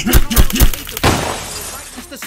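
Glass-shattering sound effect: a sudden crash of breaking glass about a second in that fades out, preceded by a few heavy low thumps and a short laugh.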